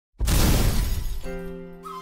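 A sudden loud crash sound effect that dies away over about a second, followed by slow background music entering with held notes.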